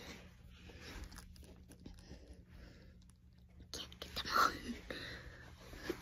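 Faint whispered speech, mostly in the second half, over a low steady background hum.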